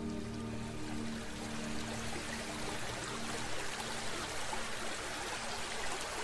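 A steady rush of flowing water like a stream, played under the fading tail of the performance's music, whose held notes die away over the first seconds.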